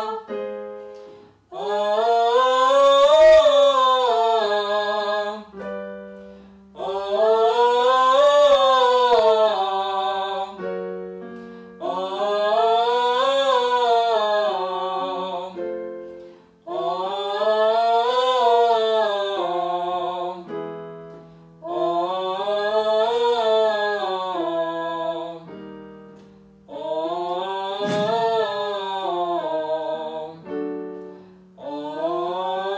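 Vocal warm-up exercise with a five-note vocalise sung through hands cupped over the mouth, used in place of a ventilation mask. The phrase is sung about six times, roughly every five seconds, each rising and falling in pitch, with held electronic keyboard notes giving the starting note between phrases, a semitone higher each time.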